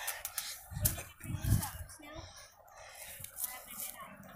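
Handling noise from a phone held by someone on a trampoline: rustling and scraping, with two dull low thumps about half a second apart a second or so in.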